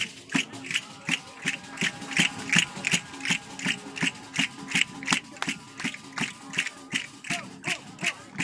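Tammurriata rhythm beaten on a tammorra frame drum with jingles, together with castanets, about three evenly spaced strokes a second, with a faint sustained tone underneath.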